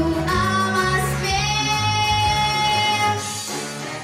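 A young girl singing a Russian song into a microphone over a guitar-led backing track, holding one long note from about a second in until near three seconds. The sung line then stops and the accompaniment plays on alone.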